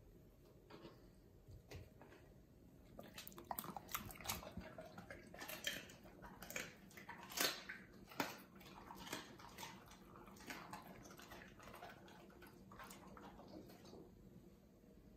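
German Shepherd chewing raw meat: a run of sharp, wet biting and chewing sounds that starts about three seconds in, comes thickest in the middle and thins out near the end.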